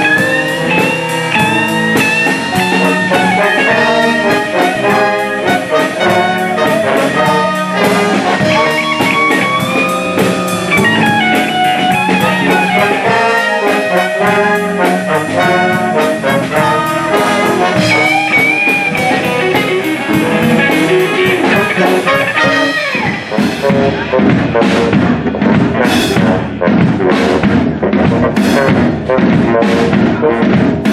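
Jazz big band playing in full ensemble, with saxophones, trumpets and trombones over guitar and drums. About 23 seconds in, the horns drop out and the drum kit takes over with sharp hits and cymbal strikes.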